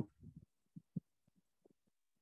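A few faint, short, dull low thumps with near silence between them: a small cluster just after the start, two single knocks around a second in, and a very faint one later.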